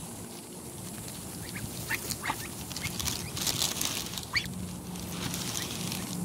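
Young Muscovy ducks pecking and nibbling Cheerios out of the grass close up: an irregular patter of small bill clicks and rustling, with a few short high peeps.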